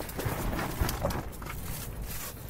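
Freshly landed cisco herring flopping on the ice while hands grab it to unhook it: irregular light slaps and taps mixed with rustling of jacket and hands.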